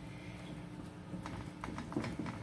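Fingertips patting and pressing soft, sticky flatbread dough into a nonstick frying pan: a few faint soft taps, bunched in the second half.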